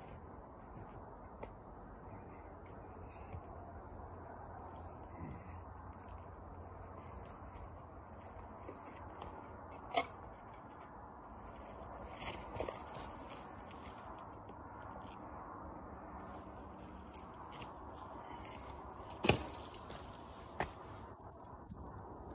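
Faint outdoor background noise with a few scattered clicks and scrapes; the loudest, a sharp click, comes about three seconds before the end.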